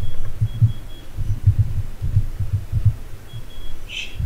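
Dull, low thuds of computer-keyboard keystrokes, irregular and a few a second, with no click on top.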